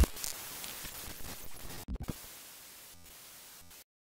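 Fading static-like hiss of an outro logo sound effect, with two brief crackles about two seconds in, dying away to silence just before the end.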